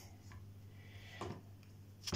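A few faint light ticks of a ceramic knife cutting a banana's end against a plastic cutting board, over a low steady hum.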